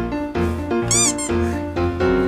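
Background music with steady notes and a repeating bass, with one short high-pitched cry about a second in that rises and falls in pitch, like a meow.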